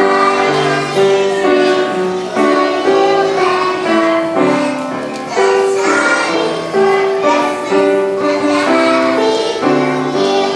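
A group of preschool children singing a song together in unison, with held notes changing every second or so, backed by accompaniment.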